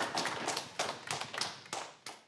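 Audience applauding, the claps thinning out and dying away near the end.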